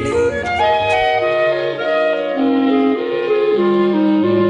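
Recorded soul-jazz music: a slow instrumental passage of held wind-instrument notes moving step by step over sustained bass notes, with no singing.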